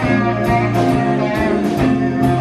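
A live blues band playing, led by two electric guitars, over a steady beat.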